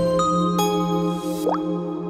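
Closing ident jingle of a local broadcaster: chiming notes ringing over a sustained chord, with a quick rising glide about one and a half seconds in.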